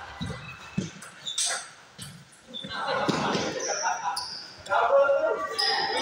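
Table tennis ball clicking off bats and the table a few times, with people talking in the hall.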